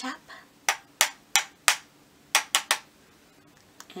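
A makeup brush tapped sharply against a pressed-powder compact seven times, in a group of four evenly spaced taps and then a quicker group of three, to knock off excess powder before application.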